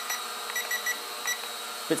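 Short, high beeps from the S160 toy quadcopter's remote controller, about seven in quick succession, as the flight-speed setting is stepped, over the steady propeller buzz of the hovering drone.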